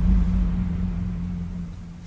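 The fading tail of a deep cinematic boom: a low rumble with a steady low hum, dying away gradually.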